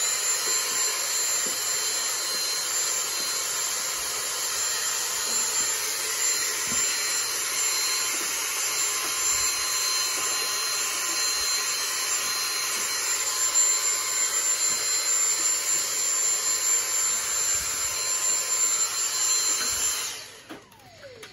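Dyson stick vacuum running steadily with a high-pitched whine over its hiss, drawing dust from refrigerator condenser coils through an extension wand with a dusting tip. The motor cuts off at the very end.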